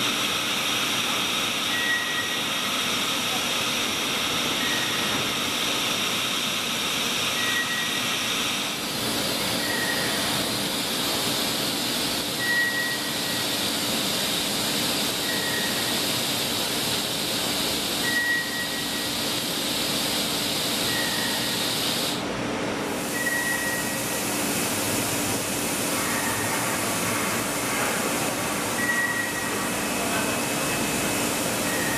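Mazak Megaturn vertical turning center running through a pallet change, a steady machine hiss and hum as the pallet carrying the chuck shuttles into the machine. A short high beep sounds every two to three seconds throughout.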